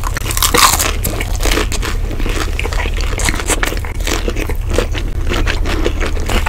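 Close-miked crunching and chewing as crispy fried rolls are bitten and eaten, a dense run of sharp crisp crunches.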